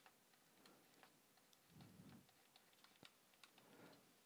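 Near silence, with a few faint clicks of a stylus tapping on a touchscreen while handwriting.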